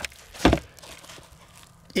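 A single short thump about half a second in, with faint handling noise around it.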